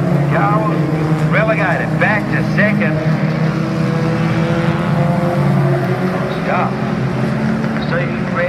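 Several junior sedan speedway cars running around a dirt oval: a steady layered engine drone with revs rising and falling as cars pass through the turns. A distant public-address voice comes and goes over it.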